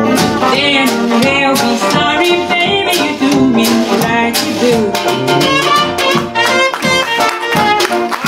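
A traditional New Orleans jazz band playing live, with the cornet carrying the melody over a steadily strummed tenor banjo beat.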